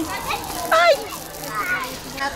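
Children's voices at play, with one short high-pitched call just under a second in.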